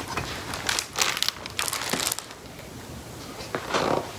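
Paper pages of a large hardcover picture book rustling as the book is handled and a page is turned, in several short bursts over the first two seconds and once more near the end.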